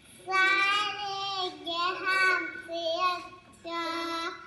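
A young girl singing unaccompanied, holding drawn-out notes in phrases with short breaks between them, the longest just before the end.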